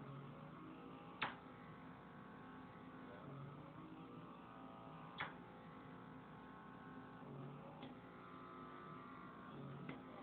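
Handheld facial pore vacuum's small motor running with a faint, steady hum as it is worked over the skin. Three sharp clicks break in, about a second, five seconds and eight seconds in.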